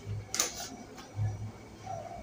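A pause in a man's speech: one short breath drawn in, close to a lapel microphone, about half a second in, over quiet room tone with a faint low hum.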